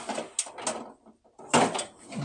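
Lower kitchen storage being opened and metal sheet pans being pulled out: noisy scraping with a couple of sharp clicks in the first second, then another short scrape at about one and a half seconds.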